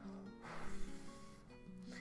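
Soft background music, with a faint breathy hiss of air blown through the lips from about half a second in, lasting about a second.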